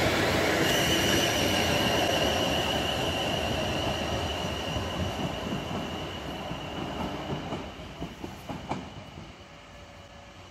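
South Western Railway Class 450 Desiro electric multiple unit pulling out of the station and fading as it recedes, its running rumble carrying a steady high whine. A few faint clicks of the wheels come near the end.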